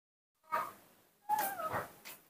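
Baby macaque crying out twice: a short call, then a longer one that falls in pitch.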